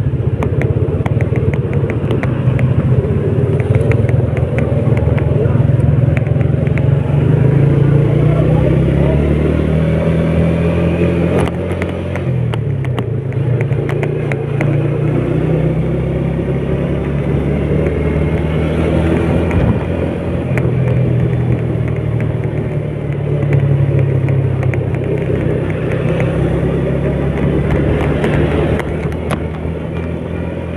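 Small underbone motorcycle's engine running while it is ridden along, its pitch rising and falling with the throttle and road speed.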